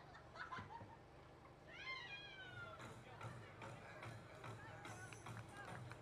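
Faint, distant voices of softball players calling out and chattering, with one high, drawn-out call falling in pitch about two seconds in, over a steady low hum.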